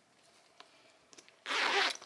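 The zipper of a woven straw handbag pulled open in one quick stroke lasting about half a second, starting about a second and a half in.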